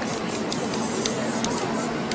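Aerosol spray-paint can hissing in short repeated bursts as paint is sprayed onto the canvas.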